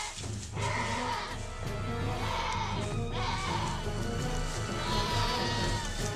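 A goat bleating several times in long, drawn-out cries while held by a Komodo dragon's bite, over background music with a steady low beat.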